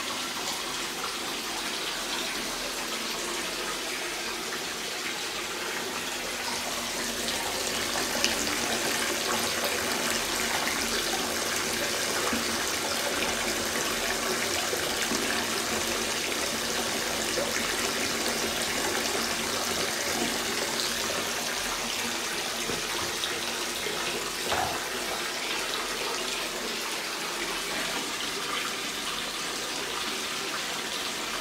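Water pouring from a wall-mounted bath spout into a partly filled spa bath: a steady rushing splash, slightly louder through the middle.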